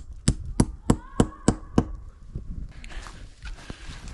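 Hammering: seven quick, even strikes, about three a second, that stop about two seconds in, driving large-headed screws through artificial turf to pin it to the ground. Faint scuffing follows.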